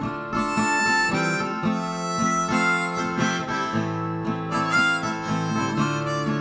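Harmonica playing a melody over steadily strummed acoustic guitar, a folk instrumental passage with no singing.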